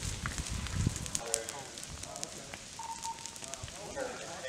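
Burning dry leaf litter and twigs on a forest floor, crackling and popping in many short, sharp snaps over a soft hiss. A low rumble runs through the first second.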